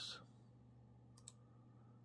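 Two quick computer mouse clicks about a second in, over near silence with a low steady hum.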